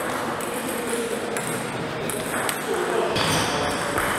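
Table tennis ball clicking sharply a few times as it bounces on the table and comes off the bats, with people talking in the background.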